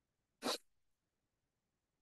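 A single brief hissing noise about half a second in, otherwise silence.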